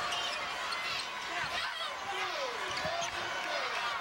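A basketball dribbled on a hardwood court, with sneakers squeaking as players cut and set screens, over the steady noise of a large arena crowd.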